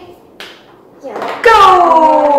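A short click, then about one and a half seconds in a person's voice starts a long drawn-out sound that slowly falls in pitch.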